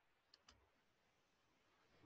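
Near silence, broken by two faint clicks a fraction of a second apart early on.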